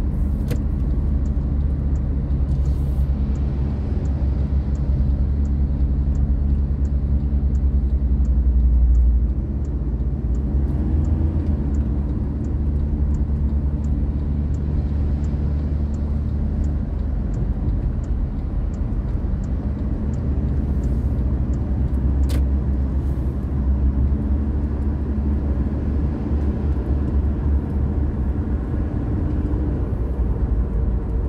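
Steady low rumble of road and engine noise inside a moving car's cabin at highway speed, with a faint, regular high ticking through the first half.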